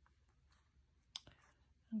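Quiet handling with one short, light click about a second in, from clear plastic stamps being pressed onto a card by fingertips.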